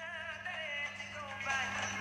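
Faint background music with a singing voice, over a steady low hum.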